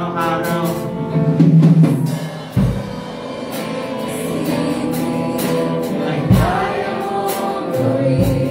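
Live praise and worship song: voices singing together to a band, with drum hits and cymbal crashes.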